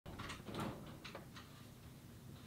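A few faint clicks and knocks, about five in the first second and a half, over a low hum.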